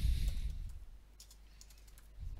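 Computer keyboard keys being typed, a few quick keystrokes about a second in, after a low rumble fades out at the start.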